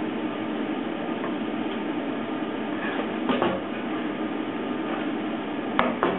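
Steady mechanical hum of shop equipment, with a short clatter a little past halfway and a sharp knock near the end as the metal workpiece and welding torch are handled.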